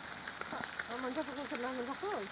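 A faint voice speaks briefly in the background over a steady crackling hiss, starting about halfway in.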